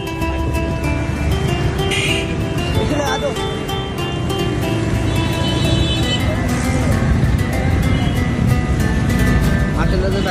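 Background music with long held notes over people's voices in a crowd.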